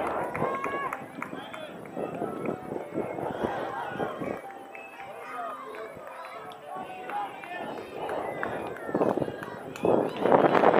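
Scattered distant voices of players and spectators calling out and chattering at a youth softball game, with no single clear speaker; the voices grow louder at the very end.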